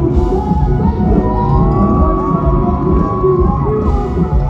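Live band music through a loud festival sound system, recorded from within the audience: acoustic guitars, violin, bass and drums, with a long held, sliding melody line through the middle.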